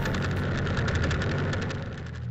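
Motorcycle engine running steadily on the move, with a fast, even pulsing.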